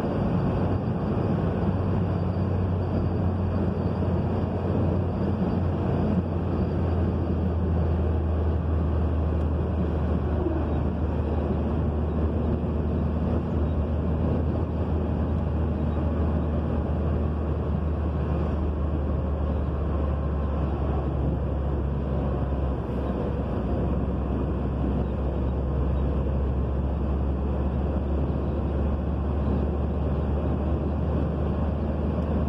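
Steady low rumble of a car's engine and tyres on the road, heard from inside the cabin while driving along a highway.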